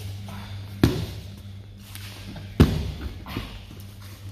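Two dull thuds of bodies dropping onto a plastic-covered floor mat, one a little under a second in and a louder one near three seconds.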